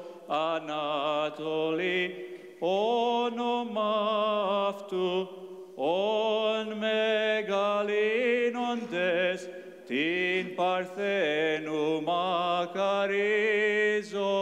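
Orthodox church choir singing a hymn of the wedding service in slow, long phrases with wavering, ornamented notes and short breaths between them.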